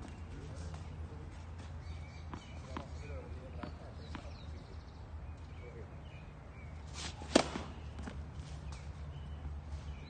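Tennis racket striking the ball on a serve: one sharp crack about seven seconds in, with a few fainter knocks earlier, over a low steady rumble.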